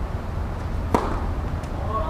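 A tennis serve: the racket strikes the ball once about halfway through with a single sharp crack, followed by a fainter tap about two-thirds of a second later.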